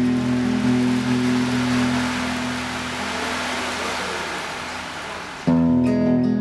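Ocean drum: beads rolling across the drum's head in a surf-like wash, over an acoustic guitar chord that dies away. About five and a half seconds in, the guitar comes back suddenly at full level.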